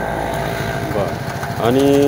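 A small vehicle engine running nearby, a steady low rumble, with a man's voice coming in briefly about a second in and again near the end.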